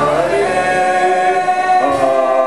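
Live acoustic band: male voices singing long held notes together over acoustic guitar, the drums silent. The held notes change to a new chord near the end.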